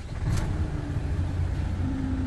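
Volvo truck's diesel engine heard from inside the cab, swelling in level about a quarter second in and then running steadily, with a low steady hum joining near the end.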